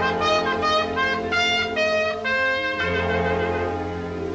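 Jazz trumpet playing a phrase of short, changing notes with one longer held note past the middle, over a swing band holding chords underneath.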